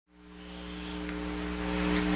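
Steady electrical hum with a faint hiss from the press conference's sound system, fading in from silence over the first second.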